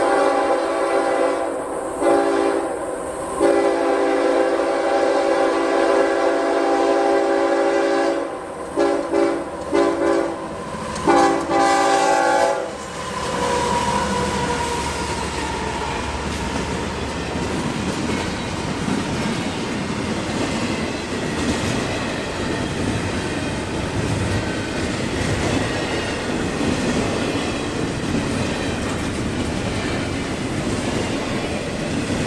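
CSX freight locomotive's air horn sounding a series of long and short blasts for the crossing, ending about thirteen seconds in. Then the locomotive and the double-stack intermodal cars roll past with a steady rumble of wheels on rail.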